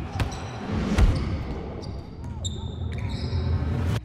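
Promotional sound-design effects: a deep thump about a second in, then short high electronic beeps, over a low bass drone that cuts off suddenly at the end.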